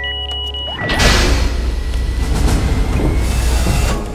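Tense background music with short electronic beeps. About a second in, a loud rushing noise with a deep rumble comes in and lasts about three seconds, then cuts off.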